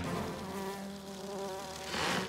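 Cartoon mosquito buzzing in flight: a steady, droning buzz that dips a little and then grows louder near the end as it closes in.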